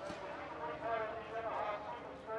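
Faint background speech: a distant voice talking in short phrases, well below the level of the commentary.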